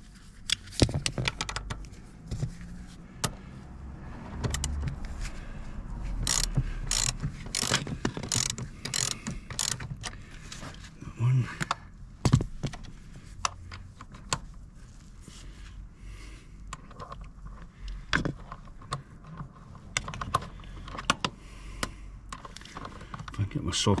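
Hand socket ratchet clicking in irregular spells as it turns a bolt on a car seat rail, with metallic clinks of the socket and tool against the rail.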